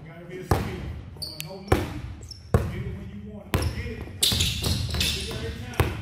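Basketballs bouncing on a hard indoor court floor as players dribble: about five sharp, echoing bounces at uneven intervals.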